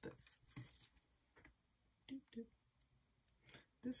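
Faint handling of a strip of copper foil tape on card: a few soft, short clicks and rustles, between brief murmured sounds of the voice.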